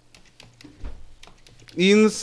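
Computer keyboard keys clicking in an irregular run as words are typed, with speech starting near the end.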